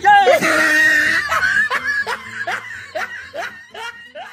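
A person laughing loudly in a high voice: a long squealing laugh at first, then a run of short falling laughs about three a second that fade toward the end.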